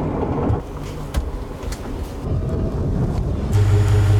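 Knocks and rattles around a wheelchair minivan's fold-out ramp. About three and a half seconds in, the Toyota Sienna minivan's engine starts a steady low hum as the van moves off.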